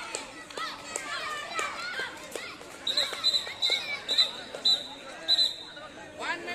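Children shouting during a kho-kho match, with sharp slaps or footfalls. About halfway through, a rapid run of short, high-pitched whistle toots begins, about three a second, and these are the loudest sounds.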